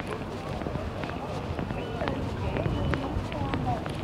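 Busy city street ambience: passers-by talking in the background, footsteps on pavement and a steady low traffic rumble.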